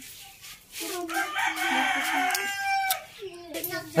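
A rooster crowing once, one long call of about two seconds starting about a second in.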